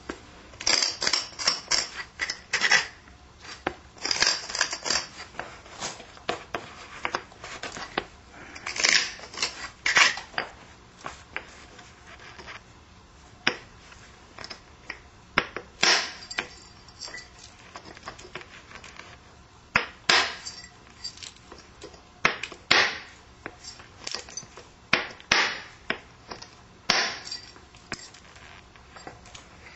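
Flintknapping on a stone Clovis point with an ivory punch: rapid runs of sharp clicks and scrapes of tool on stone in the first ten seconds or so. After that come single crisp clicks every two to three seconds as flakes are worked off the edge.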